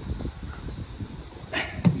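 Wind rumbling on a phone microphone outdoors, with faint irregular ticks. A short hiss and a sharp click come near the end.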